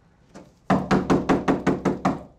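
A fist knocking on a door: one light knock, then a fast, urgent run of about seven loud knocks, roughly six a second.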